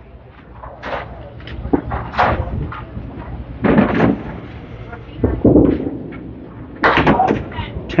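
Candlepin bowling lanes: a few separate thuds and clatters of balls and pins, the loudest a little under halfway through, with voices in the background near the end.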